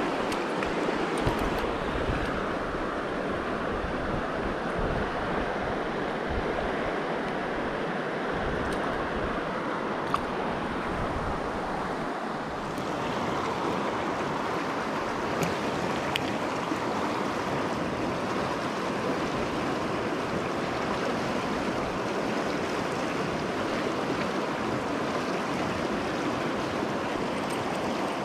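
Fast, high river water rushing over rocks and riffles: a loud, steady wash with a few faint clicks.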